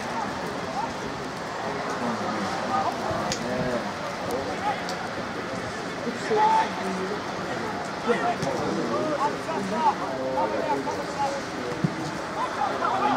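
Many voices talking and calling at once: the general chatter of soccer spectators and players at an outdoor match, with a few sharp knocks in the second half.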